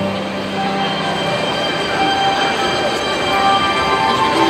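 Recorded train sound effect in a dance routine's soundtrack, played over a sports hall's speakers: a steady noisy rumble of rolling wagons with several high, squeal-like tones held above it, and no beat.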